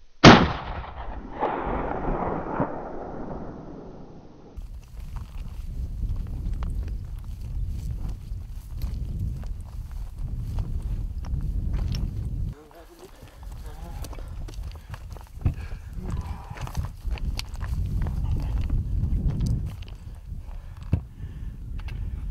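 A single hunting-rifle shot about a quarter second in, loud and sudden, echoing off the hills for about four seconds; it is the shot that takes a Barbary sheep ram. After it comes a low outdoor rumble of wind on the microphone with faint scattered clicks.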